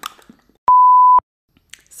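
A single steady electronic bleep, about half a second long, that cuts in and out abruptly with a click at each end: an edited-in censor-style bleep tone.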